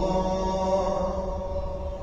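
Background music: a sung vocal chant with long, held notes.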